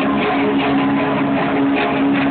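Oi! punk band playing live: electric guitar chords held over a steady, driving drum beat.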